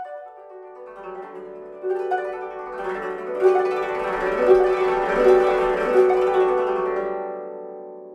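Solo koto, its strings plucked with finger picks, opening a piece: a single note, then plucked notes building into a louder, ringing flurry from about two seconds in, fading as the strings ring out near the end.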